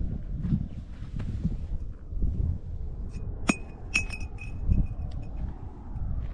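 Footsteps on dirt with a low rumble of wind and handling on the microphone. About three and a half seconds in come two sharp, ringing clinks about half a second apart, then a few fainter ticks.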